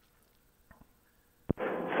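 Near silence with a couple of faint ticks, then a sharp click and a steady hiss of radio static about three-quarters of the way through, as a recorded air traffic control transmission keys up.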